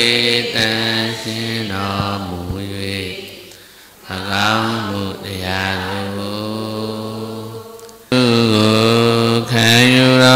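Buddhist devotional chanting in a low voice, long drawn-out sung tones in phrases. There are short breaks for breath about four and eight seconds in.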